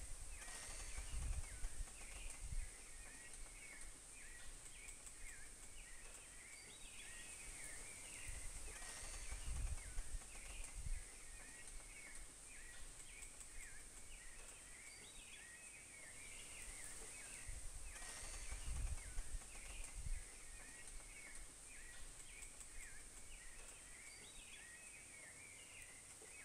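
Faint tropical forest ambience: a steady high insect drone with continual small chirping calls throughout, and a few low rumbles of wind on the microphone.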